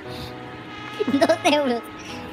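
A steady, even buzzing drone, with a short burst of a person's voice over it about a second in.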